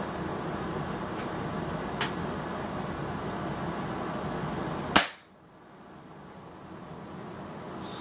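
A Hatsan Striker 1000X .22 spring-piston break-barrel air rifle firing a single shot about five seconds in, a sharp crack. A faint click comes about two seconds in.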